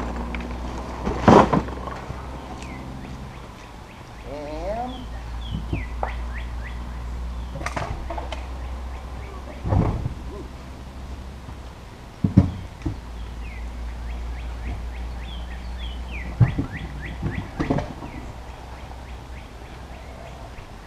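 A heavy thump about a second in as a long cardboard box is set down, then several scattered knocks and thuds of objects being handled, with small birds chirping now and then over a steady low outdoor hum.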